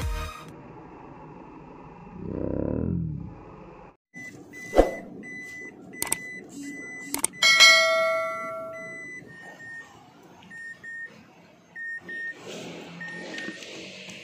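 Editing sound effects for a subscribe animation: a swoosh, then mouse-click clicks and a notification-bell ding. A short high beep repeats about twice a second through most of it.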